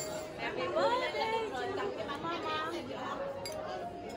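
Several people chatting at once around a table, their voices overlapping, with a light clink of china.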